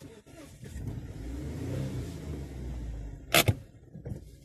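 A car passing close by: a low engine-and-tyre rumble that swells to a peak around two seconds in and then fades away. Two sharp loud clicks come near the end.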